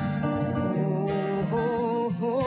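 Live acoustic guitar accompanying a woman's singing voice; about halfway through she holds a wordless note with vibrato.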